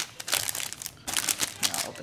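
Clear plastic bag around a small spiral-bound notebook crinkling as it is handled and turned over, in irregular crackles with a short lull about halfway through.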